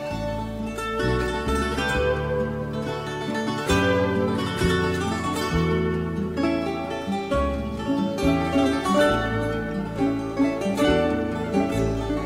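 Instrumental break in a fado: Portuguese guitar plays a melody of quick plucked notes over a classical guitar's bass notes and chords.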